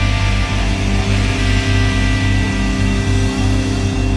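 Heavy rock music: an instrumental passage of guitars and bass holding long sustained chords over a pulsing low end.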